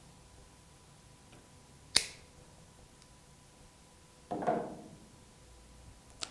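A single sharp snip about two seconds in, as side cutters cut through a Magura hydraulic disc-brake hose. A short, duller rustling noise follows about two seconds later.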